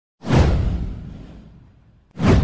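A swoosh sound effect from an animated title intro. It swells up suddenly about a quarter second in, sweeps down in pitch and fades out over about a second and a half, with a deep rumble under it.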